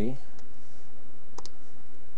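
Keys of a handheld scientific calculator pressed with the end of a marker: a faint click about half a second in, then a sharper click about a second and a half in.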